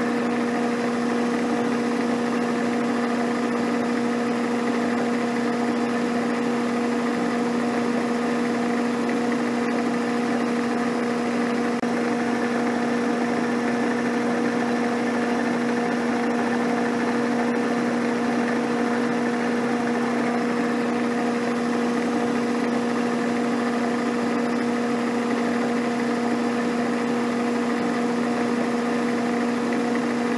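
Milling machine running a carbide-insert face mill at about 720 rpm, taking a face cut across a metal block: a steady machine hum with a constant pitched whine that does not change.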